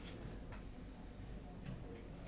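A few faint, sharp clicks over a steady low room hum.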